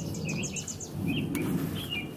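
Small birds chirping outdoors: a quick run of about eight short, high chirps in the first second, with scattered lower chirps through the rest, over a steady low background noise.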